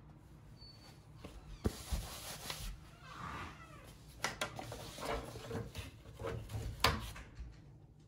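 A plastic embroidery hoop being handled and fitted onto the embroidery machine's carriage: several sharp clicks and knocks, the loudest near the end, with rustling of stabilizer paper and felt in between.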